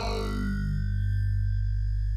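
Formant synthesizer, double-tracked left and right with a little reverb and parallel compression, holding one long, steady low note.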